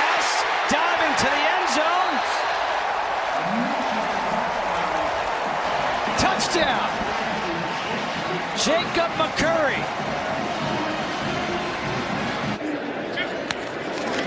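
Stadium crowd cheering a touchdown: a steady mass of crowd noise with individual shouts and yells rising and falling over it, and a few sharp knocks.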